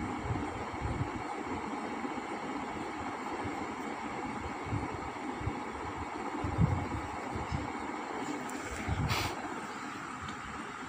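Steady rumbling background noise with a few soft low bumps, and a sharp click a little before the end.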